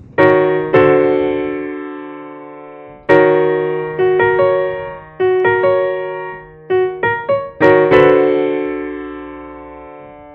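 Yamaha portable keyboard in a piano voice playing a slow chord passage: two chords near the start left to ring, a run of shorter chords in the middle, and a final chord held over the last two seconds. The passage is the song's ending, built around a D major seventh chord.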